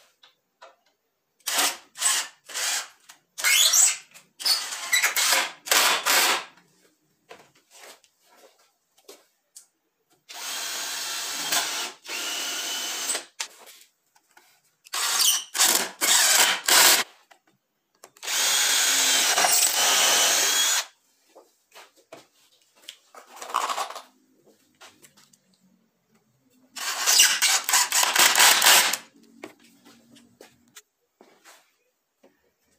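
Cordless drill drilling and screwing through white melamine board into solid pine. It runs in clusters of short trigger bursts, with two longer steady runs of about three seconds each, and pauses between the holes.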